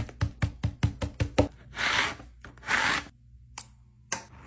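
Hands working clear transfer tape over a vinyl sticker sheet: a quick run of about seven sharp taps, then two longer rasping strokes, and a single click near the end.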